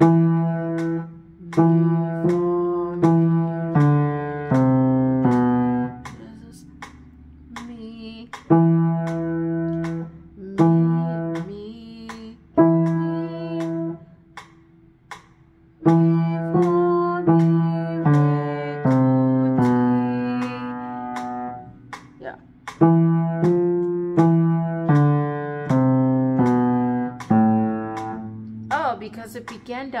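Upright piano played in short practice phrases: a passage of single notes and chords about six seconds long, broken off and started again four times with short pauses between.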